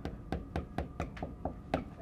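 Felt-tip marker tapping on a whiteboard, a rapid series of light taps as a row of dots is drawn.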